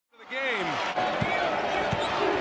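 Basketball dribbled on a hardwood court, a couple of low bounces about 0.7 s apart, over steady arena crowd noise.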